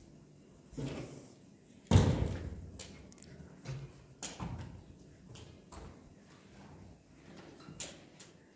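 Knocks and bumps as a canister vacuum cleaner and its hose are picked up and carried, switched off. The loudest is a sharp thump about two seconds in with a short ring after it, followed by several lighter knocks.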